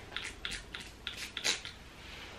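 Fine-mist spray pump of a Smashbox Photo Finish Primer Water bottle, spritzed about eight times in quick succession in the first second and a half, each a short faint hiss, the last the loudest.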